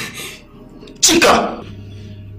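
A woman sobbing: one short, loud, breathy cry with a falling pitch about a second in. A steady low hum follows.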